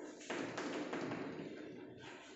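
Chalk writing on a blackboard: a sharp tap as the chalk meets the board, then scratchy, ticking strokes that fade near the end.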